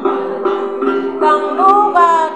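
Đàn tính, the Tày long-necked gourd lute, plucked in quick, even repeated notes, with a woman singing a then chant over it from a little past halfway, her voice sliding upward.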